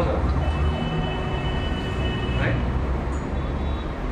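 Steady low background rumble of the lecture hall, with a faint high steady tone held for about two seconds from half a second in, and a single spoken word near the middle.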